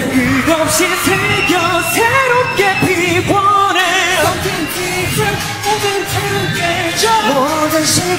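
Male K-pop group vocals sung live, a melodic passage with sustained notes and vibrato about halfway, heard with the instrumental backing track largely removed so only thin traces of the music remain under the voices.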